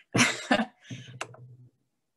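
A woman laughing briefly: a couple of breathy bursts, then a low chuckle that cuts off abruptly before the end.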